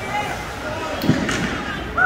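Indistinct voices echoing in an indoor ice rink, with a sharp clack of hockey play about a second in and a fainter knock just after.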